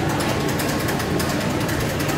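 Soft-serve ice cream machine running while matcha soft serve is dispensed: a steady mechanical whir with a fast, fine rattle.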